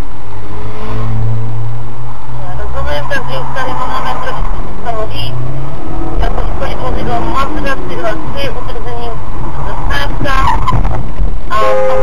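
Car engine under hard acceleration, heard from inside the cabin, its pitch climbing about five seconds in, with excited voices talking over it from about three seconds in.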